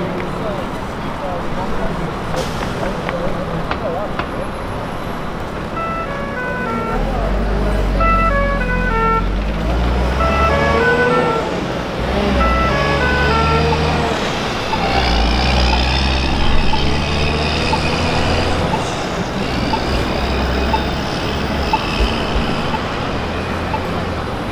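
Busy downtown intersection: traffic passing and a crowd of pedestrians talking. From about seven seconds in, music with a deep bass line and a short stepping melody plays over it.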